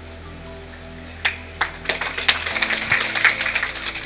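Background music with steady held notes; about a second in, scattered hand-clapping from an audience begins and thickens into irregular applause.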